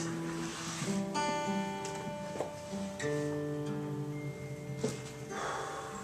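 Acoustic guitar playing slow, ringing chords as soft accompaniment, changing chord about a second in and again about three seconds in.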